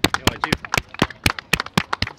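Hand clapping: a quick run of sharp, separate claps at an uneven pace, several a second.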